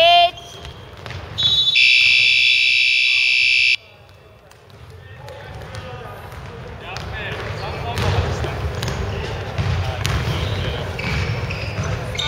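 Basketball shoes squeaking on a hardwood gym floor, then a loud, steady electronic buzzer sounds for about two seconds and cuts off sharply: the game-clock buzzer marking the end of the game. Players' voices and movement on the court follow.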